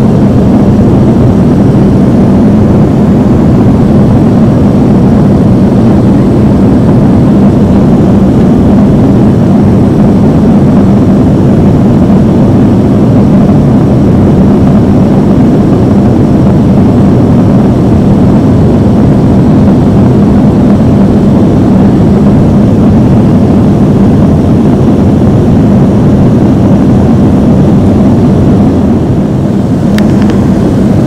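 Cabin noise of an Avro RJ85 in its climb after takeoff: the steady, loud rush of its four turbofan engines and the passing air, with a steady hum underneath. The level dips slightly near the end.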